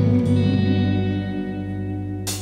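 Electric guitar played through an Orange amp, chords ringing out with echo and slowly fading, while bass notes hold underneath.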